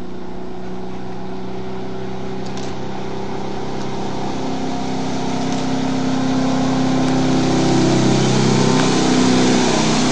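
Inboard engine of a 1930s wooden speedboat running at speed, with a steady engine note and a rushing hiss of water above it. Both grow steadily louder through the second half as the boat comes closer.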